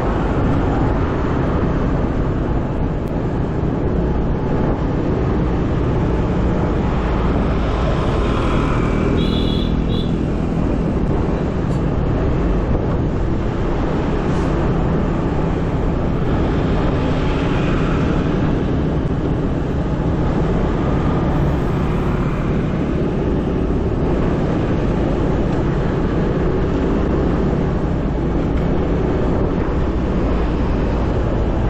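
Steady engine and road noise from riding a motor scooter in traffic, with other vehicles passing close by. A brief high beep comes about nine seconds in.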